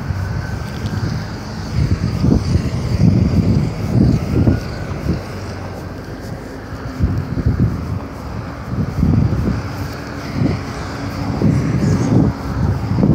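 Wind buffeting the phone's microphone in irregular gusts, with a faint vehicle sound underneath.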